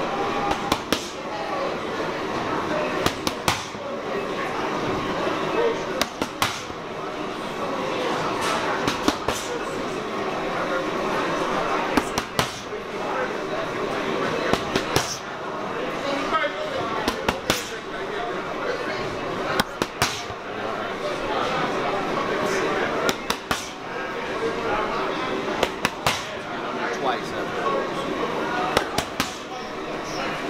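Boxing gloves smacking focus mitts in quick combinations of two to four sharp punches, a burst about every three seconds, over background chatter.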